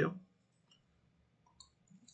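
Near silence after the end of a man's speech, with a faint computer mouse click about one and a half seconds in.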